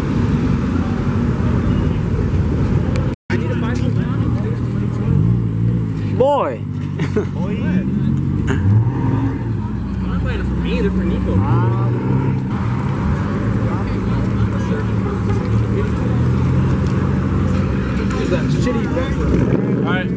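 Several car engines idling and moving off at low speed, their pitch rising and falling as the cars pull away past, with people talking in the background. The sound cuts out for an instant about three seconds in.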